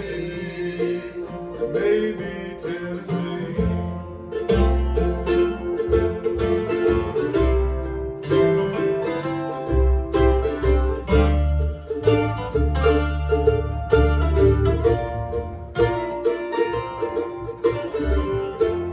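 Acoustic string band playing an instrumental break: picked mandolin and strummed acoustic guitar over an upright bass line, in a bluegrass-country style.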